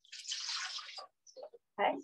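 Homemade almond milk poured from a container into a Vitamix blender jar: a steady splashing pour that lasts about a second and then stops.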